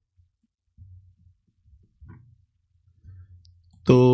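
Near silence with a few faint low thuds about one, two and three seconds in; a man's voice starts right at the end.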